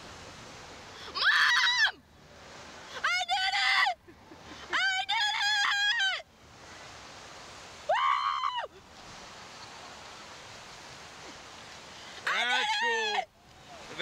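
Thrill-ride riders screaming in five short high-pitched bursts, each about a second long, with a steady rushing hiss between them.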